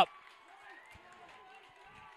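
Faint open-air ambience of a football field, with distant, indistinct voices, after the commentator's voice cuts off at the very start.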